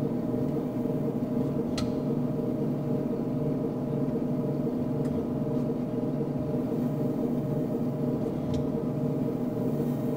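Simulated aircraft engine drone from a flight simulator's sound system, held steady on final approach, with a few faint clicks about two, five and eight and a half seconds in.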